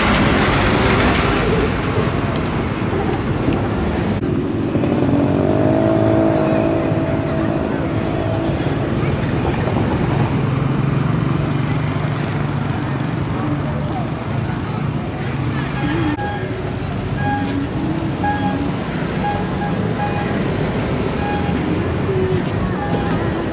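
Street traffic: cars and a van passing close by, with engine sound loudest at the start and a rising engine note a few seconds in, over a faint murmur of voices. Short high beeps repeat about once a second in the last several seconds.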